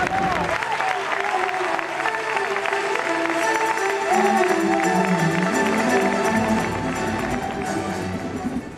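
Circus show music playing while an audience applauds, with the clapping growing denser about three seconds in.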